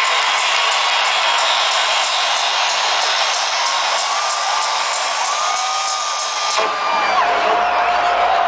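Electronic dance music with a steady beat playing loudly over a cheering crowd. The music cuts off suddenly about six and a half seconds in, leaving the crowd cheering and whooping.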